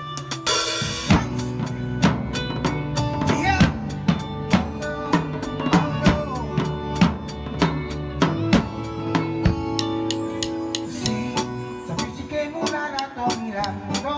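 Acoustic drum kit played live to a song: a steady groove of snare, bass drum and cymbal strokes, with a crash cymbal about half a second in, over pitched backing instruments.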